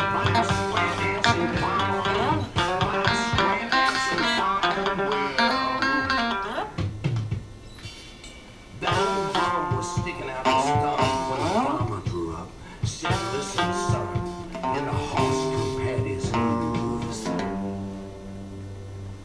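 Electric guitar playing choppy, bluesy riffs, with a quieter stretch about seven seconds in and notes sliding upward near the middle.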